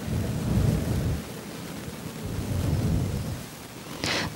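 A congregation murmurs a prayer line back in unison. Many voices blur into a low, indistinct rumble that swells twice, with no single voice standing out.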